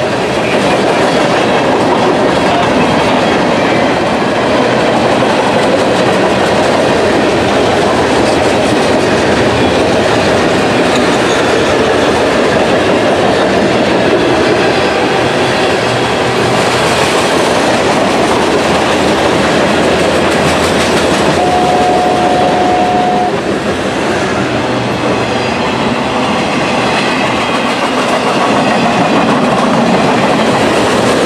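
Freight train cars rolling past at close range: a loud, steady run of steel wheels on rail as tank cars, boxcars and covered hoppers go by. About two-thirds of the way through, a single steady whistle-like tone sounds for under two seconds over the train noise.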